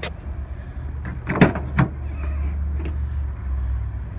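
Ford F-150 pickup tailgate being unlatched and opened: a sharp metallic clack about a second and a half in, then a second clunk a moment later, over a steady low rumble.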